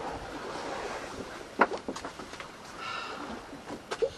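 Wind and water noise on a sailing yacht under way, with wind on the microphone, and two short knocks about a second and a half in.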